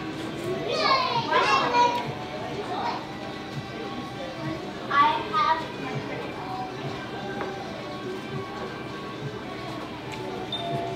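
Background music mixed with high-pitched voices, loudest briefly about a second in and again around five seconds in.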